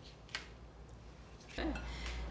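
Faint crisp rustles and light taps of partially baked wonton wrapper cups being handled and set down on a metal baking sheet, with one sharper tap about a third of a second in.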